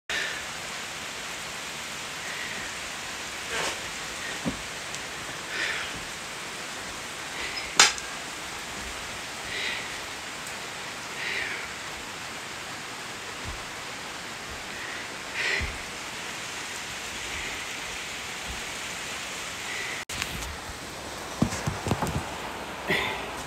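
Steady hiss with short breathy puffs every couple of seconds, a man breathing hard after a weight workout, and one sharp click about eight seconds in. Near the end come knocks and rubbing as the phone is handled close to the microphone.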